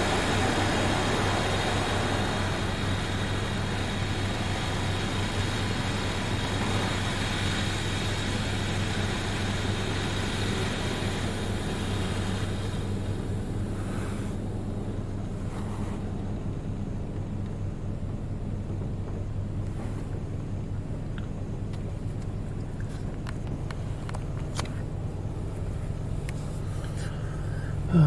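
Water spray from a Belanger Saber touch-free car wash hitting the car's body and rear window, heard from inside the cabin over a steady low hum. The spray is loudest in the first half and fades about halfway through as it moves away.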